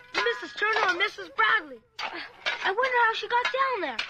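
Radio-drama sound effects of shovels digging into earth, with a woman's high-pitched wailing cries rising and falling over them and a brief break about two seconds in.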